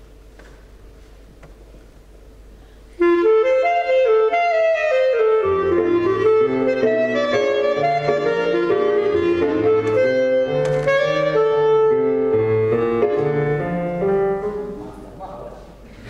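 Clarinet and piano playing a blues in F. After a few seconds of quiet room sound, the clarinet enters suddenly with the melody about three seconds in. Piano bass notes join a couple of seconds later, and the music softens near the end.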